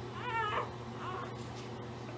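A four-day-old pit bull puppy gives a high-pitched squealing cry that rises then falls, with a shorter, fainter cry about a second in.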